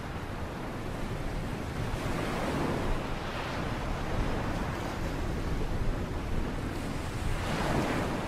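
Sea waves washing onto the beach, with wind buffeting the microphone. The surf swells up twice, about two and a half seconds in and again near the end.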